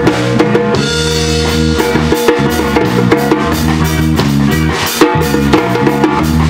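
Live band playing an instrumental passage: a drum kit with bass drum and snare hits keeping a steady beat under electric guitars.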